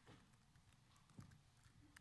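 Near silence, with a few faint taps and knocks from laptop keys being typed on.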